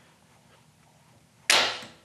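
Quiet handwheel feeding, then about one and a half seconds in a single sharp clack that rings briefly: the quill-feed automatic depth stop on a Bridgeport-style mill head trips, and the feed lever springs out, releasing the quill.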